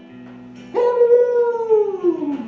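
A wolf-style howl: one long pitched call that starts suddenly about three-quarters of a second in and slides down in pitch near the end, over a soft backing track.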